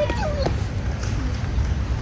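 Steady low background rumble of a large store, with a faint, short high-pitched voice sound in the first half second that glides downward, like a child's call.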